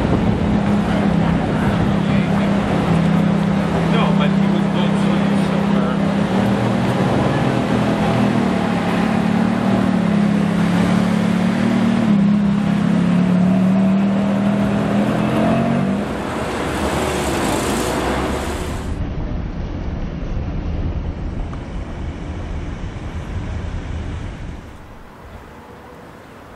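Ferrari F430 Spider's V8 running at low revs as the car creeps along in traffic. It is a steady low engine drone with a slight waver in pitch, lasting about sixteen seconds. Then it fades into fainter traffic noise.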